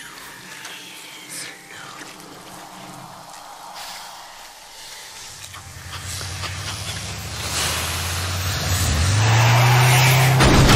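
Film soundtrack: soft hissing and breath at first, then a low, steady droning rumble that swells from about halfway and grows much louder near the end, building tension.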